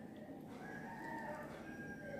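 A faint, drawn-out bird call lasting about a second and a half, heard over low background noise.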